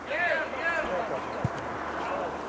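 Players shouting calls to each other across a football pitch for about a second, then a single dull thud of the ball being kicked.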